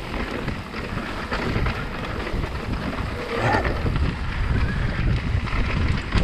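Mountain bike descending a rocky dirt singletrack, with wind buffeting the microphone. Tyres roll over the dirt and the bike rattles and knocks over rocks in short, uneven jolts.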